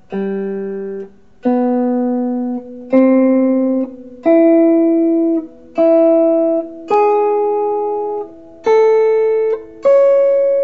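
Clean electric guitar playing single picked notes in major-third pairs: a root at the fifth fret, then the note two whole steps higher on the same string, moving across the strings. The notes come about one every second and a half, each left to ring into the next, and the line climbs in pitch overall.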